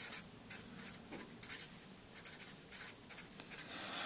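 Black marker writing on paper: a run of short, light scratching strokes as words and an arrow are written out by hand.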